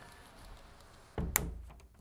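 A door opening: a low thud a little over a second in, with a sharp latch click.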